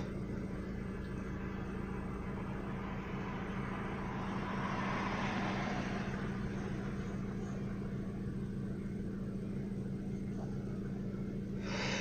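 The 2003 Hyundai Accent's 1.6-litre four-cylinder twin-cam engine idling steadily, heard from inside the cabin as a low, even hum, swelling slightly around the middle.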